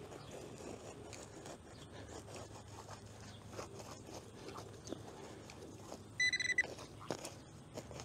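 A metal-detecting pinpointer scratches and rustles through playground wood chips while probing for a target, then gives one steady half-second beep about six seconds in, signalling that it has found the metal.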